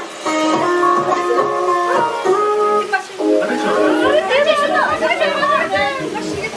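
Background music led by plucked guitar; from about halfway through, voices talking over it.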